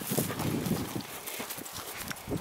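Footsteps crunching through dry grass: a string of irregular soft crunches that thin out in the second half.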